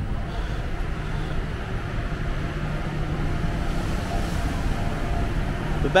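Steady low rumble with a constant hum: the machinery and ventilation noise of a cruise ship's open deck, with no single event standing out.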